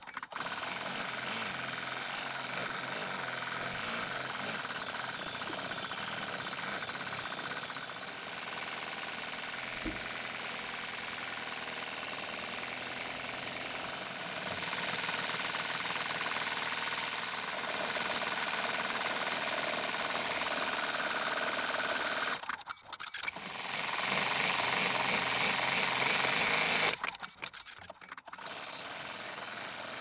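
Computerised embroidery machine stitching out satin stitches, a steady rapid needle chatter. It gets louder in stretches and stops briefly twice, about three-quarters of the way through and near the end, before starting again.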